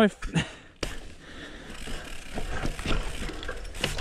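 A downhill mountain bike rattling down a rough, rocky dirt trail: tyres crunching over dirt and rocks, with a steady run of clicks and knocks from the chain and frame over the bumps.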